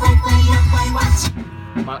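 A song with a drum kit played along to it, the music cutting off abruptly just over a second in.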